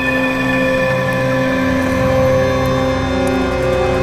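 Suspenseful television background score: sustained held chords over a low pulsing rumble, shifting pitch a few times.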